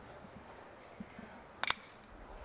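Metal baseball bat striking a pitched ball: one sharp crack about one and a half seconds in, over faint crowd ambience.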